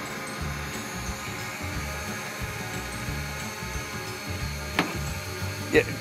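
DJI Mavic Pro quadcopter hovering close overhead: a steady propeller whine of many even tones at a constant pitch, with a single light knock near the end.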